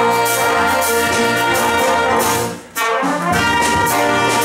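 Jazz big band playing, with trumpets, flugelhorn and trombones sounding full, held chords. The band cuts off briefly about two and a half seconds in, then comes straight back in together.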